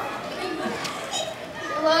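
Quiet children's voices and chatter, with a girl starting to speak near the end.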